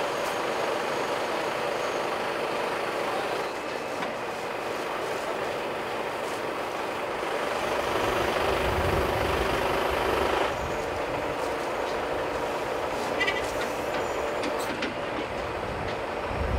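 Truck engine running to drive the hydraulics of a Palfinger truck-mounted loader crane as its boom is worked, a steady mechanical hum. It gets deeper and louder for a couple of seconds in the middle, with a few light clicks near the end.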